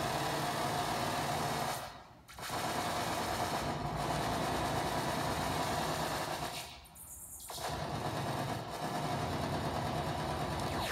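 Eurorack modular synthesizer drone: a single oscillator through a VCA, modulated by an Intellijel Quadrax function generator, sounding as a dense, steady buzz with held tones. It cuts out briefly about two seconds in and again for about a second near the seven-second mark.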